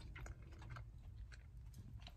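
Faint chewing and small mouth clicks of a person eating a soft, fluffy donut, over a low steady hum.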